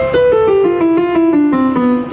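Yamaha PSR-S670 arranger keyboard being played to test its keys: a run of single notes stepping steadily downward, about five a second.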